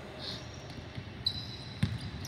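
Basketball bouncing on a wooden court as a player starts dribbling: a faint bounce about a second in, then a loud one near the end.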